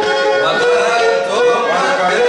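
Pontic lyra (kemenche) bowed in a lively folk melody, with held notes and short slides between them.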